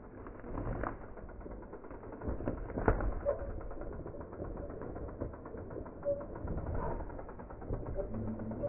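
Berria Mako full-suspension mountain bike rolling over rocky ground, its tyres rumbling and knocking on the stones, with a sharp knock about a second in and another about three seconds in, growing louder near the end as the bike comes close. A few short bird calls can be heard.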